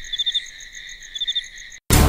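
Crickets chirping in a steady high trill, with a quick run of three or four louder chirps twice. The chirping cuts off suddenly just before the end and loud music comes in.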